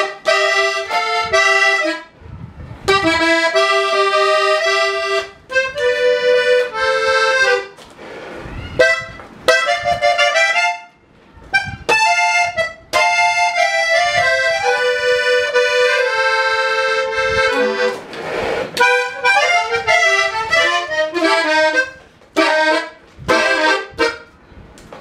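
Hohner Panther diatonic button accordion played solo: a melody of quick notes in phrases, broken by brief pauses.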